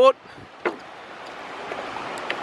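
Steady rushing of sea water washing around a wooden jetty and onto the beach, growing slowly louder, with a single short knock, likely a footstep on the jetty boards, about two-thirds of a second in.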